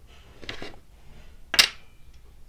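Wooden dominoes being handled on a tabletop: faint handling sounds, then one sharp wooden clack about a second and a half in.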